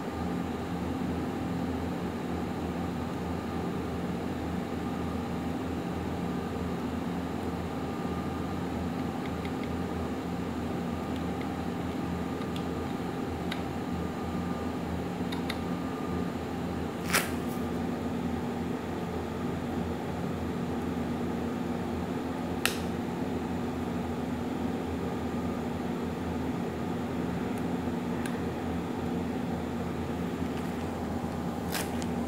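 Steady background hum with a few held tones, like a fan or air conditioner running in a small room. Two short sharp clicks stand out, about halfway through and again some five seconds later.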